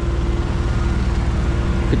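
Diesel engine of a Cat PF-300C pneumatic-tyred roller running with a steady low hum as the roller travels over fresh asphalt.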